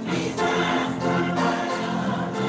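Church choir singing gospel music, several voices holding sustained chords.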